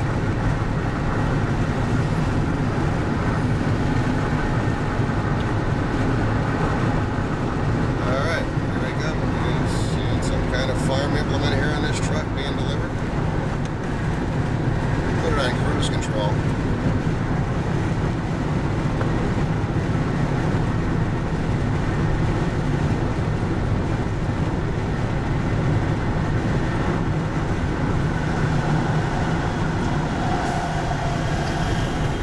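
Steady road noise inside a car cruising at highway speed: a low rumble of tyres on pavement and the engine, with a few brief higher sounds between about 8 and 16 seconds in.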